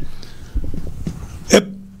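A short pause in a man's speech, then one short, sharp vocal "é" about one and a half seconds in, its pitch held briefly as the next word begins.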